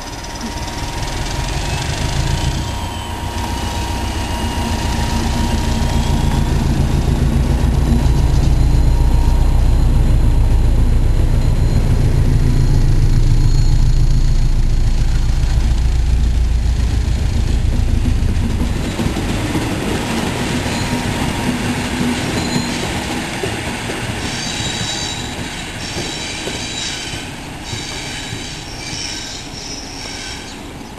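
Class 73 electro-diesel locomotive working hard on its diesel engine as it passes with a rake of de-icing units: a deep rumble that builds to its loudest mid-way as the locomotive goes by, then fades as the train pulls away. Near the end, high-pitched wheel squeal from the departing train.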